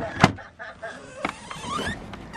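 A sharp click, a second click about a second later, then a short rising whine from a sliding fitting being moved.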